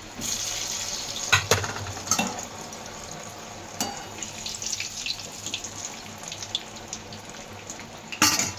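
Pieces of coriander vadi deep-frying in hot oil in a metal kadhai: a steady hissing sizzle that swells just after the start as a fresh piece goes in. A few sharp clicks stand out in the first half.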